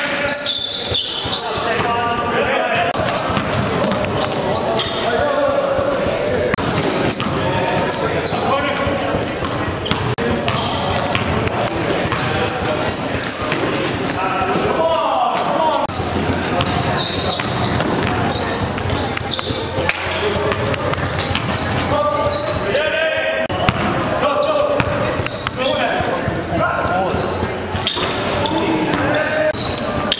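A basketball bouncing repeatedly on an indoor gym court during play, with players' indistinct calls and chatter echoing in the large hall.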